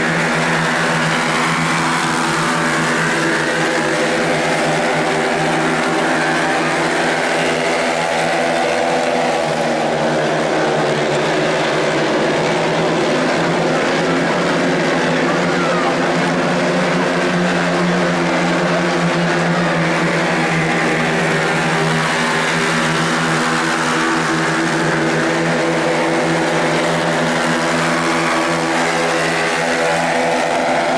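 A pack of midget race cars lapping a dirt oval: several engines run together at steady high revs, their pitches rising and falling as cars pass and work through the turns.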